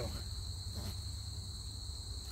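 Crickets trilling in the grass: a steady high-pitched chirring that holds without a break, over a low rumble.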